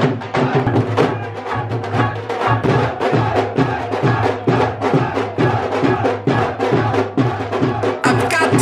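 Dhol drums playing a fast, driving rhythm of sharp stick strokes over deep booming beats, several strokes a second.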